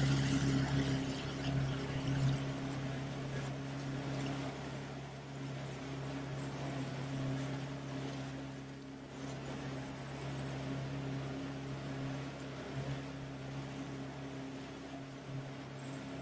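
Mercury outboard motor driving a boat at speed: a steady engine hum over the rush of water and wind.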